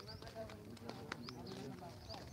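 Several men's voices talking over one another while walking, with irregular sharp clicking footsteps of sandals on a paved road.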